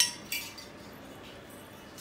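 Steel spoon clinking against a stainless-steel bowl: one sharp clink at the start and a lighter one a moment later.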